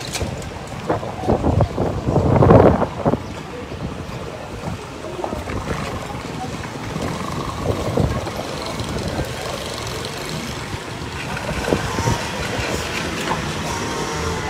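Wind buffeting the microphone of a handheld camera, loudest in a gust about two to three seconds in, over faint voices and a few handling knocks.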